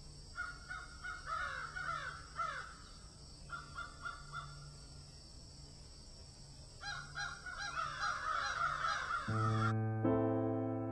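Birds calling outdoors in three bursts of repeated calls. Near the end, piano music begins.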